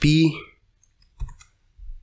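A brief spoken word at the start, then one or two faint clicks of a computer keyboard about a second in: a key pressed while typing a spreadsheet formula.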